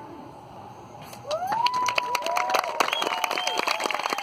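The last note of a kravik lyre fades out. About a second later an audience breaks into dense clapping, with cheers and whistles rising over it, as the song ends.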